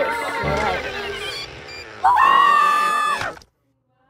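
Cartoon music with a wavering melody and a regular low beat fades out; about two seconds in, a cartoon character lets out a high, held scream of about a second that cuts off suddenly.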